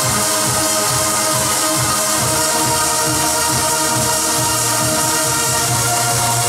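Electronic trance-style music played live on a Yamaha arranger keyboard: sustained synth chords and melody over a steady electronic beat.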